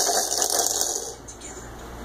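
Plastic baby activity-centre toy rattling as the baby bats at it, a dense rattle that fades out about a second in.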